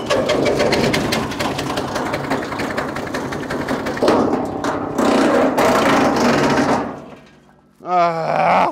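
The petrol engine of a GTM Professional wood chipper catches suddenly and runs loud with a fast, rattling beat. It gets louder about four seconds in and again a second later while branches are fed in, then dies away near the end.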